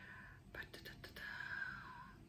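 A woman whispering faintly under her breath, unvoiced, as if mouthing words she is reading.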